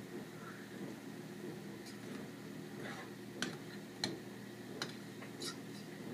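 A few light, sharp clicks and taps of a utensil against a metal saucepan, spaced under a second apart in the second half, over a steady low hum.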